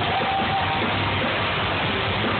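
Live rock band playing loud and steady, with electric guitars.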